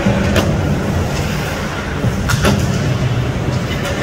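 Ice hockey play heard from the stands: a steady low rumble of the rink with a few sharp clacks of sticks and puck, one about half a second in and two close together a little past the middle.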